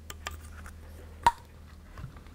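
Light metallic clicks as a poppet valve is slid into its guide in a Honda CBR600RR aluminium cylinder head, with one sharper click and a brief ring a little past halfway as the valve seats.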